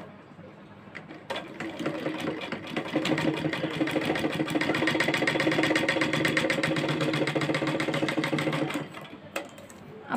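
Sewing machine stitching through fabric: it starts about a second in, picks up to a fast, even run of needle strokes with a steady hum, and stops shortly before the end.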